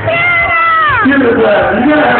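A high, drawn-out voice holds one note for about a second, then slides down in pitch, over crowd chatter.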